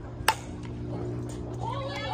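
A single sharp crack of a softball bat striking a pitched ball about a quarter second in, followed near the end by spectators' voices calling out.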